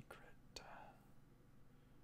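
Mostly near silence, with a brief faint whisper from a man about half a second in, starting with a small click.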